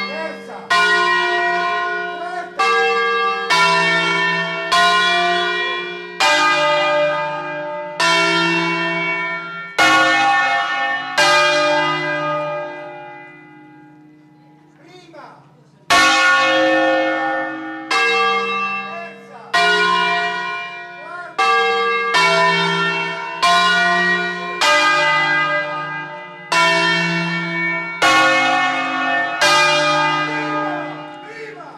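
Peal of five Angelo Ottolina bells (Bergamo, 1950), tuned to a flat D-flat, swung full circle on wheels and rung by rope in a concerto: the bells strike one after another at about one strike a second, each left ringing over the next. About thirteen seconds in the strikes stop and the ringing dies away, then the sequence starts again about sixteen seconds in.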